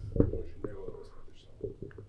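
Quiet speech: a few soft, low syllables from a man, well below the level of the surrounding talk.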